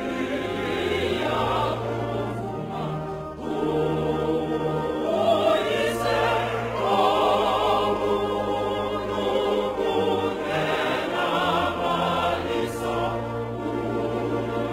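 A group of voices singing a hymn together in harmony, with long held, wavering notes.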